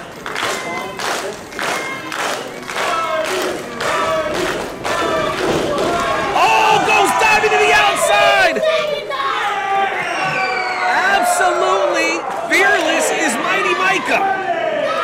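Small crowd of wrestling fans clapping in a steady rhythm, then many voices shouting and cheering, loudest from about six seconds in.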